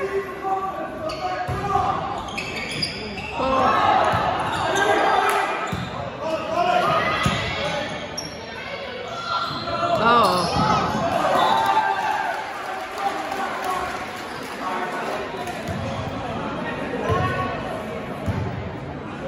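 A volleyball rally in a gym: the ball struck and bouncing off the wooden floor, amid players' calls and spectators' voices carrying through the hall.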